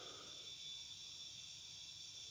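Near silence: a faint, steady background hiss of room tone during a pause in speech.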